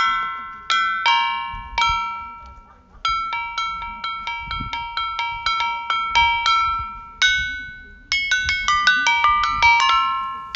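Lithophone of flat stone slabs struck in quick melodic runs; each strike gives a bright, bell-like ringing note that dies away fast. After a brief pause about two and a half seconds in, the notes come faster, in rapid runs.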